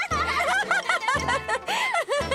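A child's snickering, giggling laugh over background music.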